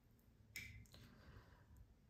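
Near silence: room tone, with one faint, short click about half a second in.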